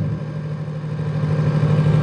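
A steady low engine hum that grows gradually louder.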